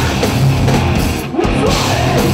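Heavy metal band playing live: distorted electric guitar over a drum kit, loud and dense, with a brief drop just past the middle before the band comes back in.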